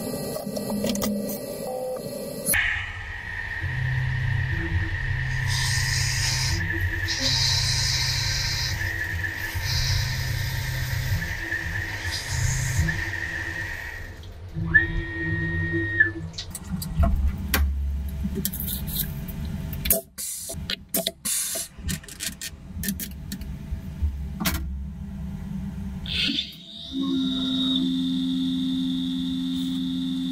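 Sped-up sound of a Tormach PCNC 440 CNC mill drilling with a 3/8-inch drill: the spindle and axis-motor whines are raised in pitch and cut in and out in a repeating pattern about once a second. Later come clicks and shifting tones, and a steady higher whine near the end.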